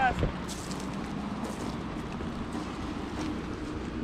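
Steady outdoor background noise with a faint low, steady hum under it, after a voice trails off at the very start.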